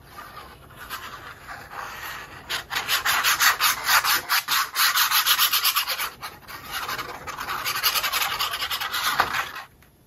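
A liquid-glue bottle's tip is rubbed back and forth across paper, spreading glue in many quick strokes, with paper rustling. The rubbing grows louder a couple of seconds in and stops suddenly just before the end.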